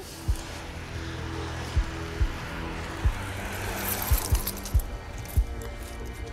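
Background music of low held notes with a scattered series of short low thuds.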